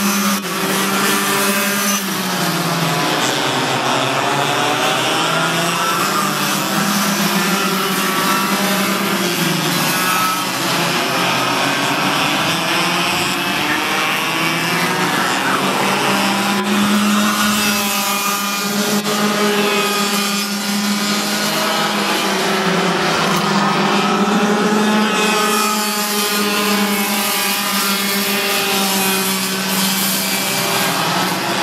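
Yamaha cadet-class two-stroke kart engines racing past, their pitch rising and falling as the karts accelerate out of corners and ease off into them.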